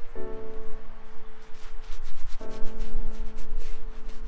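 Shaving brush scrubbing lather into stubble on the face, a scratchy rubbing, over background music of sustained chords that change about halfway through.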